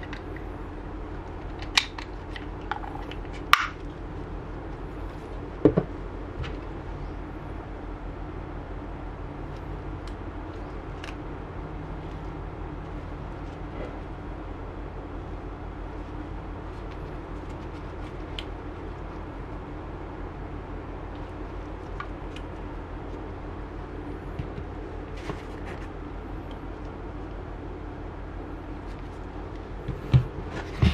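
Plastic action cameras and clear waterproof housings being handled: a few sharp clicks and knocks in the first six seconds, then fainter ticks, over a steady low hum.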